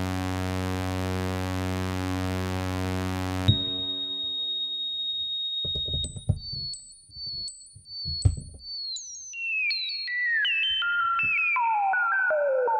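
Eurorack synthesizer with a Bastl Instruments Cinnamon filter at full resonance: a loud, buzzy low tone with many overtones cuts off about three and a half seconds in, leaving the pure, high, whistle-like tone of the self-oscillating filter. The tone steps a little higher, with brief higher blips and a few clicks. Then, over the last few seconds, it falls in pitch in a series of steps.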